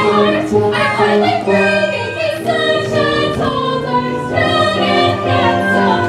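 Stage-musical chorus of mixed voices singing together over instrumental accompaniment, holding sustained notes in a full ensemble passage.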